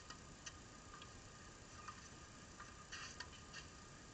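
Near silence: a faint steady high hum with a handful of soft, scattered ticks, several bunched together about three seconds in.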